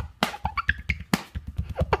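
A quick rhythmic drum beat of low thumps and sharp slaps, about six or seven hits a second.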